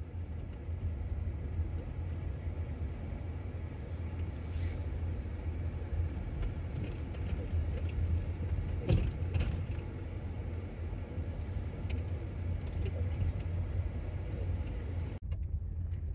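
Steady low rumble of a vehicle driving along a dirt and gravel road, heard from inside the cab, with a few brief clicks and knocks as it goes.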